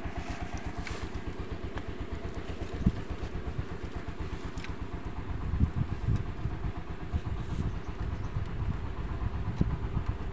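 Small motorcycle engine idling with a steady, even putter. It gets louder and rougher about halfway through.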